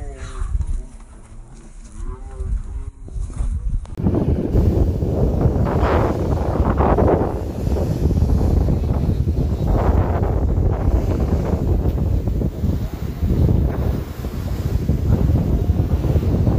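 Sea surf surging and crashing through a rock arch on a rocky shore. It is a loud, deep rumbling wash that swells and falls every few seconds. It comes in suddenly about four seconds in, after a quieter start.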